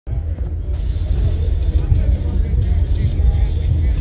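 Loud, deep bass of music played through car audio subwoofers, with faint higher sounds of the music above it.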